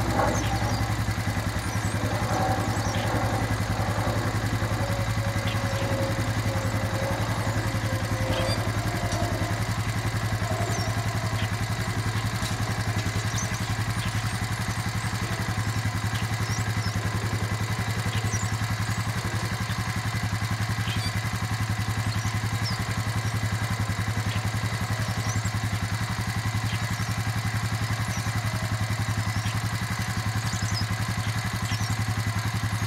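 Honda Rancher 350 ATV's single-cylinder four-stroke engine idling steadily.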